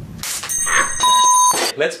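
A short noisy burst, then a bright bell-like ring of several high steady tones lasting about a second. A plain steady beep tone sounds for about half a second in the middle of the ring. A brief voice cuts in with it.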